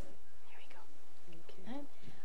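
Soft, murmured speech: a few quiet words, growing clearer near the end, over a steady low background hum.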